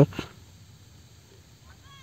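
A man's word ends at the very start, then a quiet outdoor pause, with a faint, short rising call near the end.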